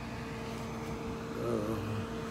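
Steady hum of idling vehicle engines. A brief faint voice comes in about one and a half seconds in.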